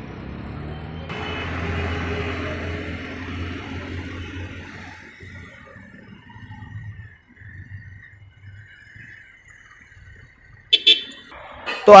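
Bajaj Pulsar 150 single-cylinder engine running on a test ride after a full service, loudest about a second or two in and then fading away, with street traffic around it. A short loud sound comes near the end.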